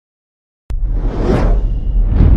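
Dead silence for a moment, then a whoosh sound effect over a deep rumble cuts in abruptly, swells to a peak and eases off, as used for an animated logo reveal.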